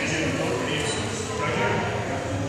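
Indistinct talking of people in a large gym hall, over a steady low background hum.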